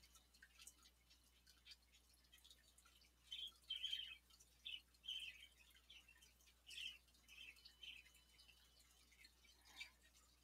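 Near silence: room tone, with a scattering of faint, short, high-pitched sounds from about three to eight seconds in.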